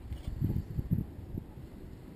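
Wind buffeting the camera microphone: a few uneven low rumbling gusts in the middle, over a steady breeze.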